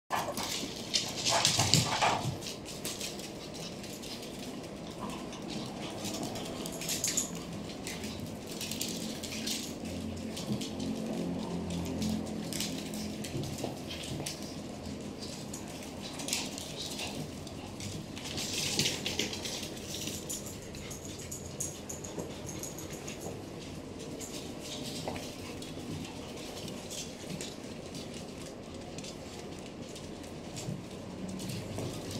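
Small dogs, chihuahuas among them, playing together and making dog noises. It is loudest in a burst about two seconds in and again about two-thirds of the way through.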